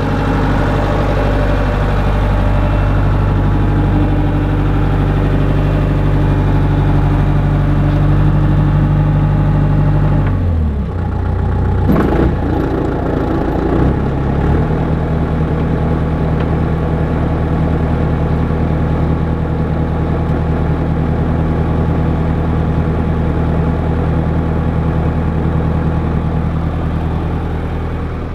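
Diesel engine of a small asphalt cold milling machine running steadily, powering the hydraulics for its milling drum and conveyor belt. About ten seconds in the engine note dips and wavers, with a knock near twelve seconds, then settles back to a steady run.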